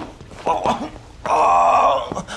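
A man groaning: a couple of short falling groans, then one long, loud held groan near the end.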